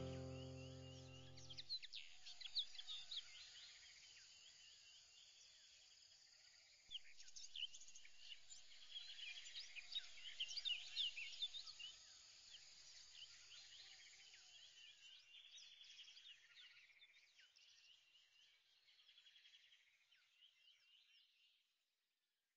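Background music ending about two seconds in, then faint birds chirping in many short high calls, busiest in the middle and fading out near the end.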